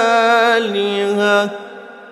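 Quran recitation (tilawah) in maqam Jiharkah: a solo voice holds a long melodic note that steps down in pitch about half a second in. It stops about a second and a half in, leaving a reverberant tail that fades away.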